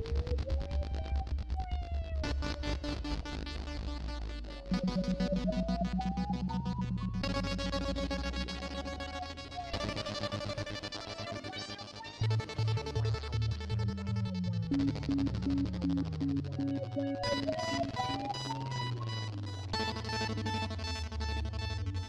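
Live-coded electronic music played from a laptop. Synthesizer patterns of rapid repeated pulses carry pitch glides that sweep upward again and again, and the texture changes every couple of seconds.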